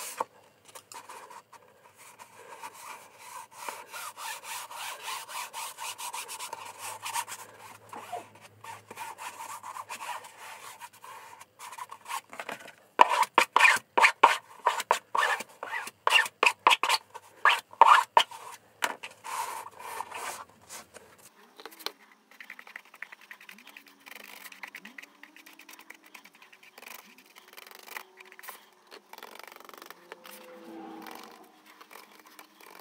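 Bone folder rubbing freshly glued book cloth down onto a board slipcase to bed it and break it over the edges: a long run of rubbing strokes that turn louder and quicker in the middle, about two strokes a second, then quieten.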